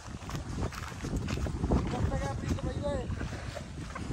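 Footsteps on a dirt path with wind buffeting the microphone. About two seconds in there is a brief call in a person's voice that rises and falls.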